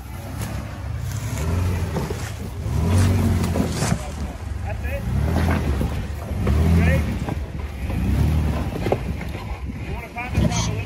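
Engine of a rock-crawling Jeep on oversized tires revving up and falling back about five times as the driver works the throttle over rocks.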